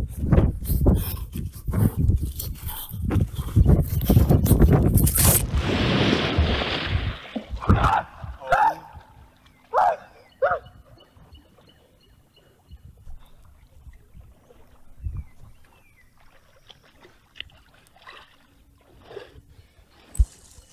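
Hurried footsteps crunching and crashing through dry leaves and undergrowth for about five seconds, then a rushing noise that fades out. A few short, sharp pitched sounds follow about eight to ten seconds in.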